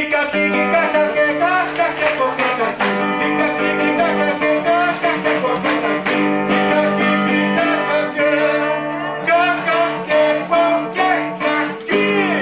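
Acoustic guitar played laid flat across the lap, a run of plucked and held notes, with a man's voice singing along.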